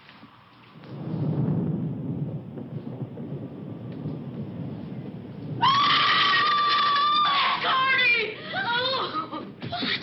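Low rumble of thunder with rain, rising about a second in. Near the middle a woman screams, one long held scream followed by shorter wavering cries.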